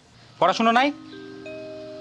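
Background drama score: held musical notes that come in one after another to build a sustained chord, following a brief spoken word.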